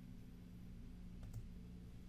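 A couple of faint clicks about a second in, over a steady low hum.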